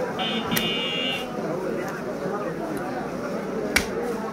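Butcher's cleaver striking beef on a wooden stump block: two sharp chops, one about half a second in and one near the end, over people talking. A short high electronic buzz sounds through the first second.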